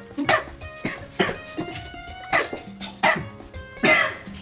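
Background music under several short coughs, from a man eating a caramel covered in ketchup.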